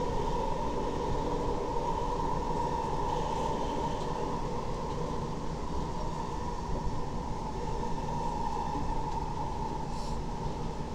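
Inside a metro train carriage in motion: the steady rumble of the car running on the rails, with a constant whine over it.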